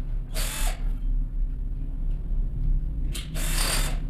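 Cordless drill-driver tightening wires into a contactor's screw terminals, run in two short bursts of about half a second each, one near the start and one near the end.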